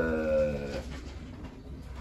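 Racing pigeons cooing in the loft, with a man's drawn-out hesitant 'eh' in the first second.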